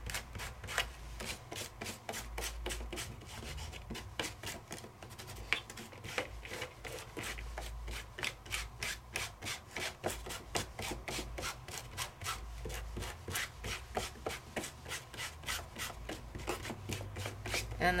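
Small round ink pad rubbed and dabbed directly over textured crackle paste on cardstock, a steady scrubbing of several quick strokes a second.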